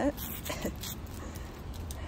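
A 14-year-old dog gives one short whimper about half a second in, falling in pitch, over a low steady rumble.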